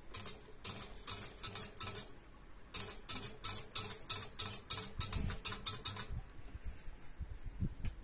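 An irregular run of small, sharp metallic clicks and light scrapes from steel parts being handled and fitted at a small bead lathe's chuck and tool rest. The clicks die away about two seconds before the end.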